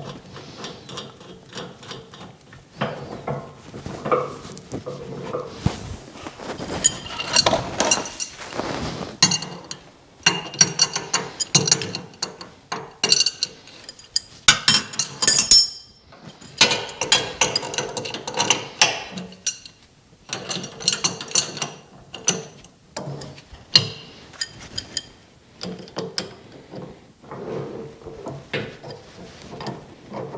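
Metal wrenches clicking and clinking on a steel hydraulic hose fitting as it is threaded into a hydraulic cylinder and tightened, in an irregular string of short metallic clicks.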